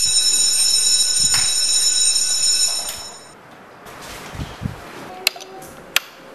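Wall-mounted electric bell ringing loudly and continuously, then cutting off about three seconds in. Quieter room sounds follow, with two sharp clicks near the end.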